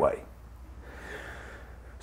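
A man's spoken word ends, then in the pause a faint breath, a soft exhale lasting about a second, comes about a second in.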